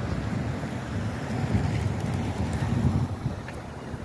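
Wind buffeting the camera's microphone, an uneven low rumble, over the sound of passing street traffic.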